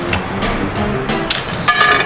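Background music, and near the end a few sharp cracks as a small hand-held toy snaps apart in the fingers.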